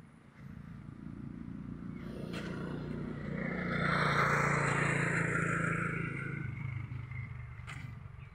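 A road vehicle passing close by: its engine and tyre noise grow louder, peak about four to five seconds in, then fade away.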